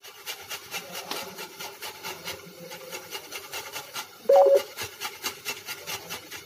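Cauliflower being grated by hand on a stainless-steel box grater: a steady run of rasping strokes, about four a second. A brief hum-like sound about four seconds in.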